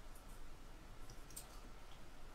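A few faint, light clicks over quiet room tone.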